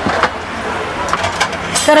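Busy restaurant serving counter: a steady din of fans and background bustle, with a few light clicks of plates and utensils and a short clatter near the end.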